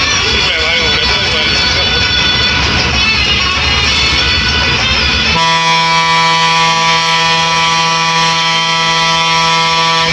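Background music, then about five seconds in a loud air horn sounds one long steady note for about four and a half seconds and cuts off sharply.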